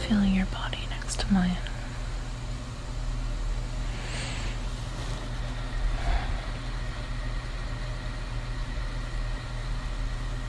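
The musical intro ends in the first second or so, then a steady ambient noise bed takes over: a low hum with an even hiss. Two faint, brief soft noises come about four and six seconds in.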